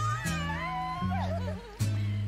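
Music: a young girl singing with wavering, sliding notes over band accompaniment with a bass line that steps between held notes.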